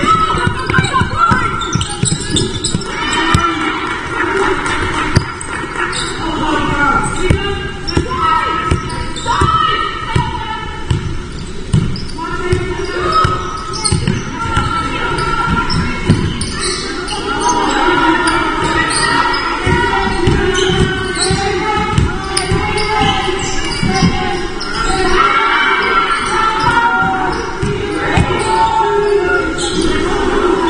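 A basketball bouncing repeatedly on a wooden sports-hall floor during play, with players' voices calling out and the echo of a large hall.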